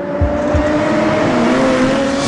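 A car engine running at speed under a loud rush of noise, its pitch dipping slightly in the middle.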